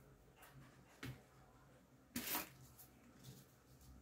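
Hands handling grosgrain ribbon while wrapping it around a bow's centre: faint rustling, a small click about a second in and a louder, brief rustle just after two seconds.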